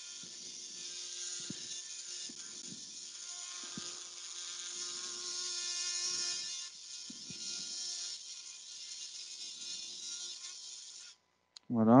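Powered oscillating surgical bone saw cutting through the kneecap along one side of a patellar bone block, for a quadriceps tendon graft. It gives a steady high-pitched whine that swells a little midway and cuts off suddenly about eleven seconds in.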